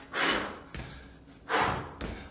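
A man's forceful breaths during a bodyweight exercise: two short, breathy exhalations just over a second apart, one for each push-to-base rep.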